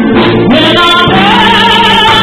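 A woman singing into a microphone with a live band, her voice rising about half a second in and then holding one long note over the steady accompaniment.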